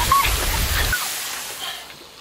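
Water spraying from a large water blaster with a steady hiss that stops about a second in, with a brief high-pitched yelp at the start.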